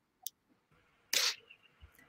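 A mostly quiet pause on a video-call line: one tiny click near the start, then a short hiss-like burst of noise a little after a second in, and a faint low thump near the end.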